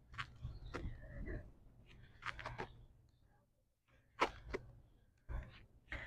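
Faint, quick breaths of a woman exercising hard during bicycle crunches, coming in short clusters with a brief pause about halfway.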